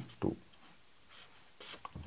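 Pen scratching on paper: two short, sharp strokes about a second in and again near the end, as a box is drawn around a written answer.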